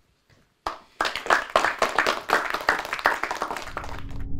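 Audience applauding in a lecture hall, the dense clapping breaking out less than a second in and going on steadily.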